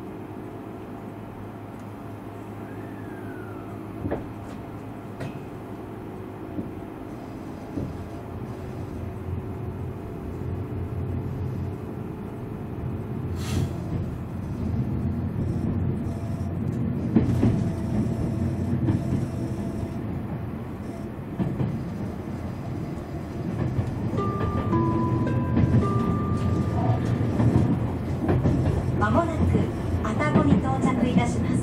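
Cabin noise of a Tobu 500 series Revaty electric train gathering speed: the rumble of wheels on rail and the running gear grows steadily louder, with steady motor tones early on. A few short tones sound near the end.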